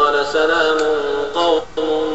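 A man's voice chanting Qur'anic recitation in Arabic, holding long melodic notes that change pitch in steps, with a brief break for breath near the end.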